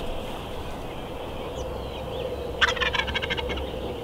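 A wild turkey tom gobbling once, about a second of rapid rattling notes, a little past halfway.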